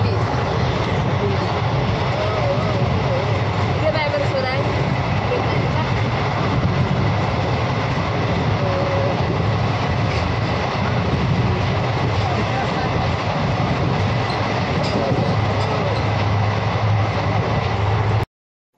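Steady running noise of an Indian Railways passenger train heard from inside the coach, loud and continuous through the open barred windows.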